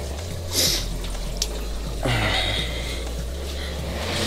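Reef aquarium water sloshing and churning at the open surface as the tank's circulation pumps ramp back up after being switched off. A steady low hum runs underneath, with a brief hiss about half a second in and a rush of water around two seconds in.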